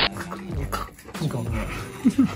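A man's low, wordless voice, quiet and broken, falling in pitch in the second half, between stretches of louder talk.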